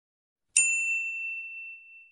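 Subscribe-button click sound effect: a single bright, bell-like ding about half a second in, ringing out and fading over about a second and a half.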